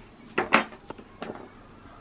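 A few light clicks and clacks of small plastic dinosaur counters and plastic tongs knocking against plastic sorting bowls and a wooden table, about four knocks in the first second and a half.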